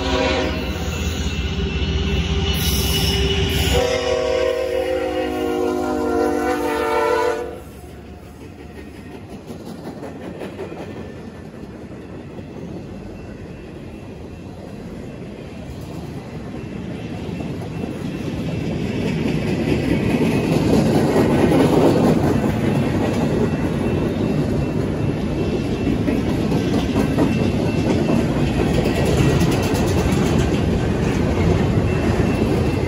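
Freight train locomotive horn sounding a loud chord, cutting off sharply about seven seconds in. The train then runs through the grade crossing, its rumble and the clickety-clack of its wheels building from about fifteen seconds on and staying loud as the cars pass.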